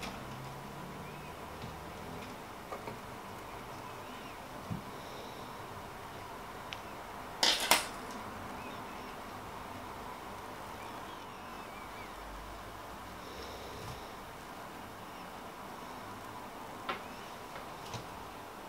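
Quiet handling sounds of soft polymer clay being pressed into a flexible silicone mould, with a few light ticks and one sharper double click about seven and a half seconds in, over a faint steady background tone.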